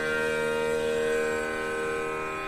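Bansuri (bamboo flute) holding one long, steady note over a sustained drone, the note easing slightly near the end.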